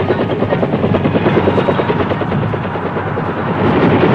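Bell UH-1 'Huey' helicopter in flight, its rotor beating rapidly and evenly, about ten beats a second, growing louder near the end.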